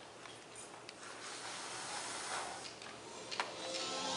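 Quiet room hiss with rustling and a few sharp clicks, the loudest about three and a half seconds in.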